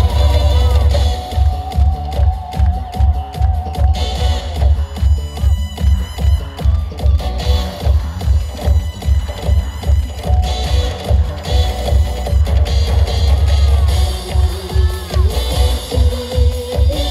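Live janggu (Korean hourglass drum) played fast with sticks over a loud electronic dance backing track with a heavy, steady beat.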